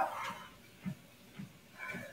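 Soft, regular footfalls on the belt of a Pacer Mini Pro walking treadmill, about two a second at an easy walking pace, after a woman's voice trails off at the start.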